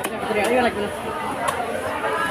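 Cleaver chopping black carp on a wooden chopping block, three sharp knocks, over steady background chatter of voices.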